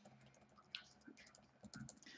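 Near silence with a few faint, short clicks of a computer keyboard and mouse: one about a second in and a small cluster near the end.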